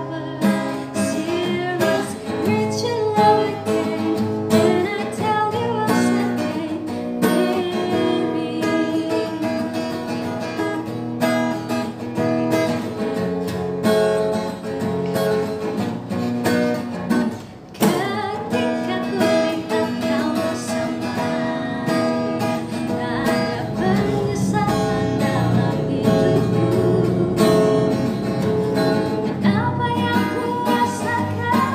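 Acoustic guitar strummed as accompaniment to a woman singing a slow pop song, with a brief drop in sound a little past halfway through.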